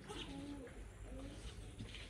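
Faint, short low-pitched calls, two of them about half a second and a second in, over quiet background noise.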